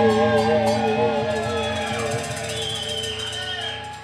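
Live rock band's closing chord ringing out and fading, its sustained notes wavering with vibrato as the song ends. A high held tone comes in above it in the second half.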